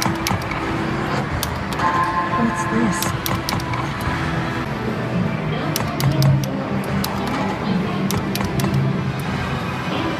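Pachinko parlour din: a pachislot machine's electronic music and sound effects play while its reels spin, over the noise of the hall. Sharp clicks are scattered through it.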